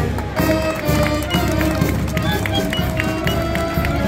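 Brass band playing.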